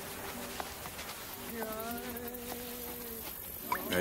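Steady buzzing drone of insects, with a higher buzz that wavers in pitch a little under two seconds in.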